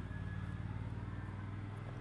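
Lincoln Ranger engine-driven welder, its carbureted engine running steadily with a low, even hum.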